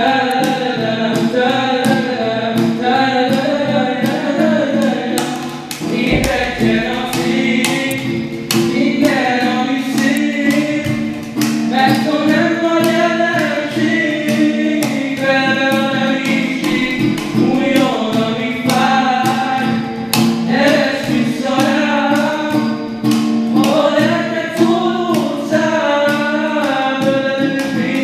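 Two young male voices singing a pop song live, accompanied by acoustic guitar and a steady beat played on a metal milk can (kanna) used as a drum.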